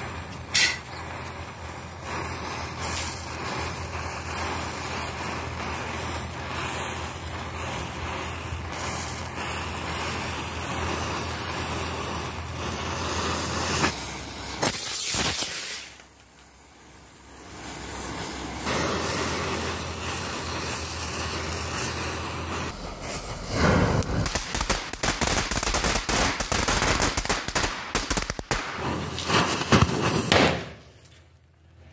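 A chain of matchsticks flaring one after another with a steady hissing crackle. From about three-quarters of the way through, a dense run of sharp pops and cracks as the fireworks it has lit go off, with a loud crack at the very end.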